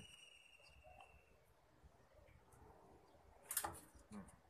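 Mostly near silence, broken about three and a half seconds in by a short scrape as a rubber A-section V-belt is worked by hand into the groove of a pulley.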